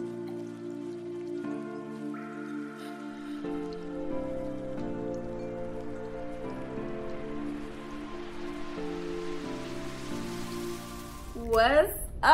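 Quiet ambient background music of sustained synth chords that change every second or so, with a rain-like hiss that swells gradually and cuts off near the end. A woman's voice starts just before the end.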